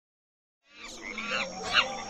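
Silence at first. Then, under a second in, faint animal-like calls with short chirping glides begin, the kind of cartoon animal sound effects that open a children's animated intro.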